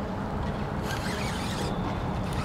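Fishing reel being cranked to retrieve line, a raspy whirring burst that starts about a second in and lasts under a second, over a steady low rumble.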